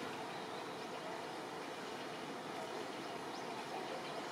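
Steady outdoor background noise with a couple of faint, short, high bird chirps.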